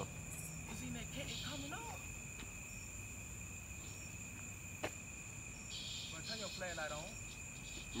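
Crickets trilling steadily, two high-pitched tones held throughout. Faint talking comes twice, and a single sharp click falls about five seconds in.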